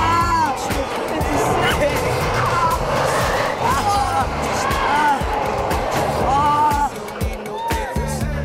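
Roller-coaster riders yelling and whooping in short rising-and-falling cries, again and again, over the rush of the ride, with background music with a steady beat underneath.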